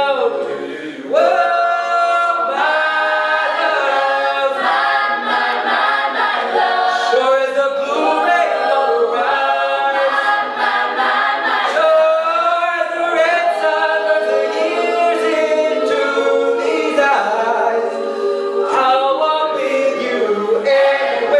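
Mixed-voice a cappella group singing in close harmony, a male lead voice on a handheld microphone over the backing singers, with no instruments.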